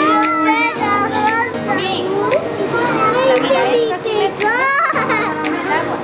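Young children's excited voices and laughter over background music.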